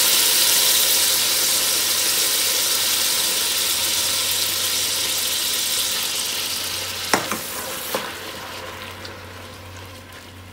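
Wet, just-thawed shrimp shells sizzling loudly in hot oil in a stainless stockpot, the sizzle dying down steadily as they cook. Two sharp knocks near the end as the shells are stirred in the pot.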